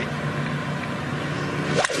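Three-wood striking a golf ball off the fairway: a single sharp crack near the end, over steady background noise.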